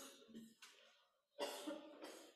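Faint coughing: a few short, harsh coughs in quick succession, the second and third louder than the first.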